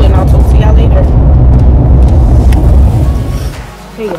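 Loud low rumble of a moving car heard from inside the cabin, with a woman's voice over it in the first second; the rumble fades out about three and a half seconds in.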